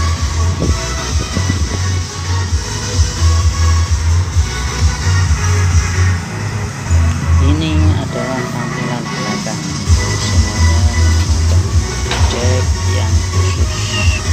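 Electronic dance music with a heavy pulsing bass line played loud through a PA system of a mixer and rack power amplifiers under test. The bass drops out for about two seconds past the middle, then comes back.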